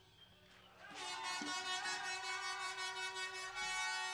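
Sustained electric guitar feedback through a stage amplifier: after a second of near silence, a steady buzzing tone rich in overtones sets in, wavering slightly in pitch now and then.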